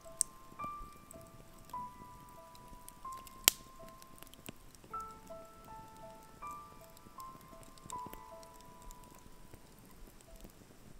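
Soft, slow melodic background music over a wood campfire crackling, with sharp pops from the burning logs, the loudest about three and a half seconds in.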